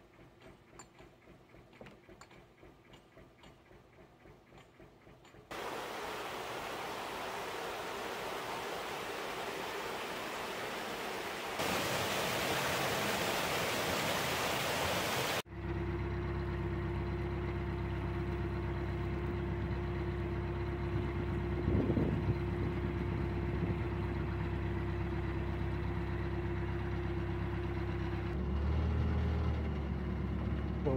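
Faint regular ticking at first, then a steady rushing noise that steps up in loudness. After a sudden cut, a narrowboat's diesel engine runs steadily at cruising speed, a constant low hum with one held tone.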